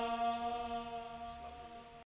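One sustained, steady musical tone with many overtones, fading out steadily: the drawn-out tail of the devotional recitation's final note as the recording ends.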